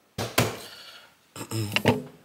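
Copper measuring scoop knocking against a drip coffee maker's filter basket as ground coffee is tipped in: one sharp knock near the start, then a few quick taps near the end.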